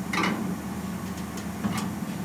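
A steady low hum, with a few short bursts of work noise as a hand-held pneumatic tool is touched to a car's sheet-metal window frame. The strongest burst comes just after the start, and two more come near the end.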